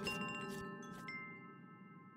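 Chimes struck a few times in the first second, then ringing on and slowly fading away.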